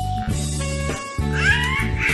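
Background music, with a baby's high-pitched squealing vocalisation coming in over it about a second and a half in.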